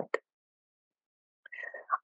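A pause in a woman's spoken narration: a word ends, followed by about a second and a quarter of dead silence, then faint, soft voice sounds as she begins to speak again.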